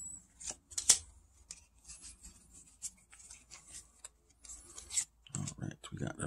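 Pokémon trading cards being handled, sliding and rubbing against one another, in a string of short rustles and clicks with one sharp snap about a second in.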